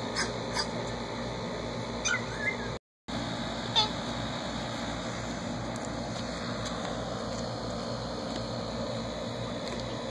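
A few brief, high-pitched animal squeaks over steady background noise: short ones at the start, a rising one about two seconds in and a falling one near four seconds, then only the background.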